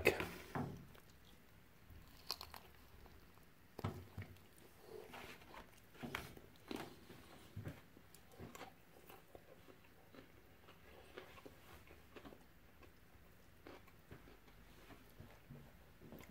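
Faint chewing of a mouthful of beef burger in a seeded bagel bun, with scattered soft clicks and mouth noises through the chewing.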